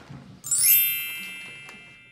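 A bright chime sound effect about half a second in: a quick sweep of ringing tones from high down to lower, then a sustained shimmering ring that fades over about a second and a half.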